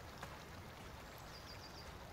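Faint riverside ambience: a low, even hiss of flowing water, with a bird chirping a quick run of five high notes a little past halfway.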